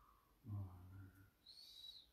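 Faint, low hum of a man's voice lasting under a second, then a brief high whistle-like tone near the end.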